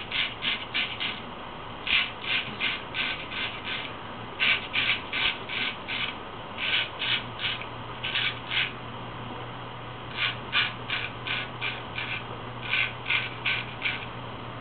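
Full-hollow-ground 17/16-inch straight razor, forged from 5160 leaf-spring steel, scraping through lathered beard stubble in short quick strokes, about three a second in runs of two to seven with brief pauses between runs.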